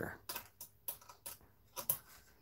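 Light, irregular clicks and taps of metal parts being handled on a partly dismantled Hermle 1161 brass clock movement, about five clicks spread unevenly, the sharpest near the end.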